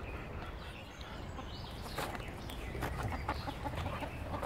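Chickens clucking: a quick run of short clucks in the second half.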